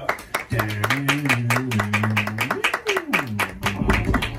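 Small audience clapping steadily, with a man's voice holding one long, wavering low note for about two seconds and then sliding down in pitch over the applause.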